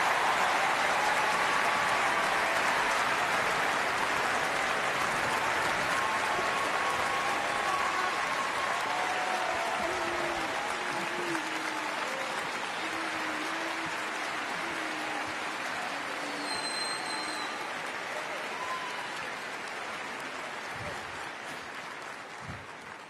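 Audience applauding steadily at the end of a speech, loudest at first and slowly fading over about twenty seconds.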